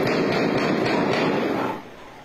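Heavy gunfire from an armed attack, recorded on a mobile phone, heard as a continuous loud, distorted roar that dies away near the end.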